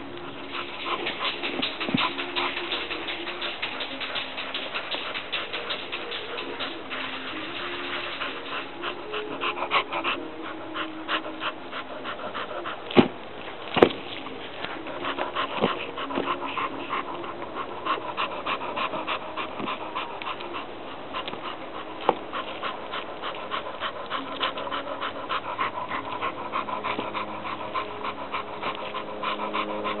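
An excited dog panting fast and steadily, with two sharp knocks close together about halfway through.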